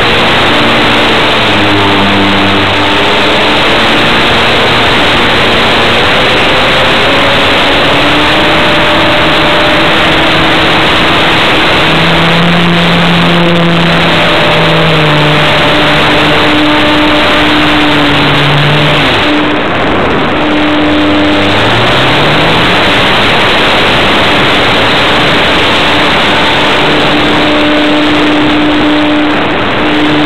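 Loud wind rushing over the microphone of a camera riding on a Multiplex Mentor electric RC plane in flight. Under it, the whine of the plane's electric motor and propeller, its pitch rising and falling as the throttle changes.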